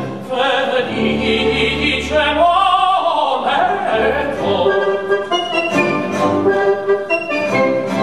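Male operatic singing over a small chamber ensemble of eleven instruments. Held, vibrato-laden notes give way in the second half to quick stepped runs climbing in pitch.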